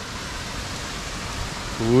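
A steady, even rushing hiss with no distinct knocks or calls, like running water or rain. A man's voice starts near the end.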